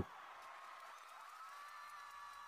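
Very faint background: a low hiss with a few soft, steady held tones and no distinct event.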